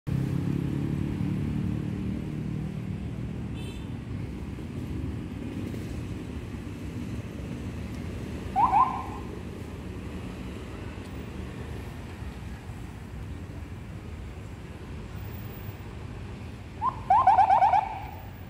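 Car engines of a slow convoy passing close by, loudest at first. A brief pitched warning tone with a falling glide comes about halfway, and a longer run of pitched warning blips near the end, from the police escort car.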